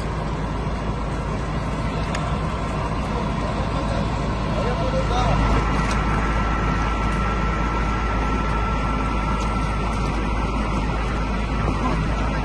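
A fire engine's motor running steadily, with a faint steady whine in the middle, under indistinct voices.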